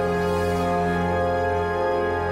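Background music score: sustained, steady held tones over a low drone, in a sad, tender mood.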